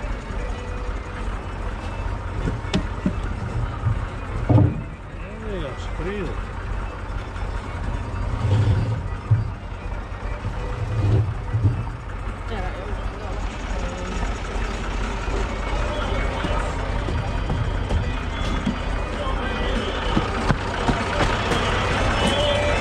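Tractor diesel engine idling steadily, with a few heavy wooden thumps as logs are set down on the trailer.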